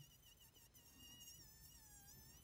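Faint high-pitched whine of a handheld rotary tool running at speed, its pitch wavering slightly and dipping near the end.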